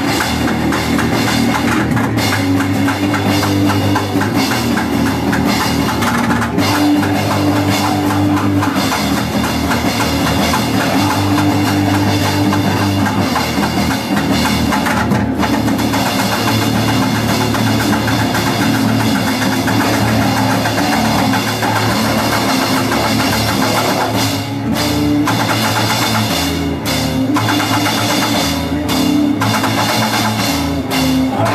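A grind/crust punk band playing live in a small room: heavily distorted electric guitar and bass riffs over fast, dense drum-kit playing, loud throughout. Near the end the band cuts out for a few short breaks between hits.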